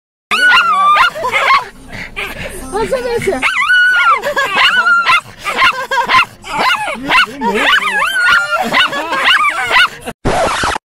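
Bichon frise giving long, high, wavering whining calls again and again, with people's voices mixed in.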